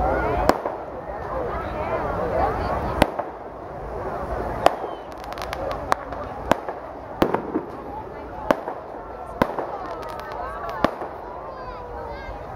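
Firecrackers going off one at a time: about a dozen single sharp bangs at irregular intervals, over the voices of a crowd.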